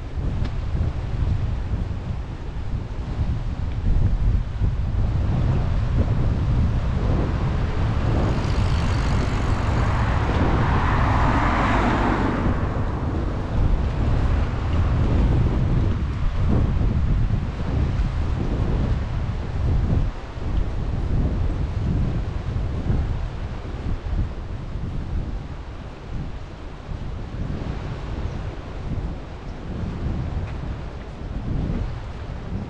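Wind buffeting the microphone in a heavy, gusting low rumble. From about nine seconds in, a broader rushing sound swells, peaks and fades over a few seconds.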